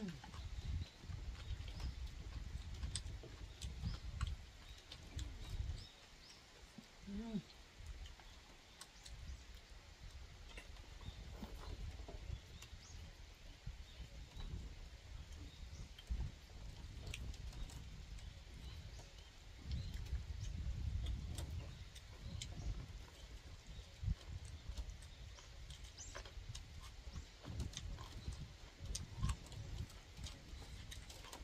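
Wind gusting on the microphone in low rumbling buffets, strongest in the first few seconds and again about two-thirds of the way through, with scattered light clicks of chopsticks against dishes during eating.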